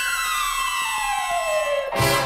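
A sliding electronic-style tone in space-age orchestral music falls steadily in pitch, like a descending siren, over faint regular ticking. It cuts off suddenly near the end as the full orchestra comes back in.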